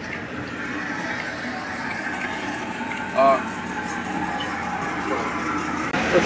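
A vehicle engine idling steadily, with one short spoken syllable about three seconds in.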